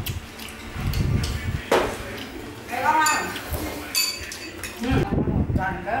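A metal spoon clinking against a ceramic soup bowl a few times, with brief snatches of voices.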